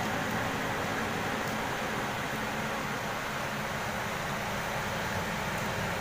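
Steady, unchanging hiss of an electric fan running.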